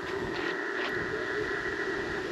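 Steady, thin hiss of receiver static from the speaker of an Icom IC-705 ham radio transceiver, with no station audible.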